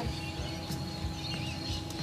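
Quiet outdoor background: a steady low rumble with faint high bird chirps.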